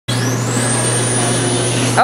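Mold-A-Rama moulding machine running as its mold halves begin to part: a steady mechanical whirr over a constant low hum, with a thin high whine that rises over the first half-second and then holds.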